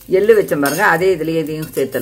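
A voice talking over metal clinks and scrapes of a slotted steel spatula stirring red chillies and urad dal in a stainless steel kadai.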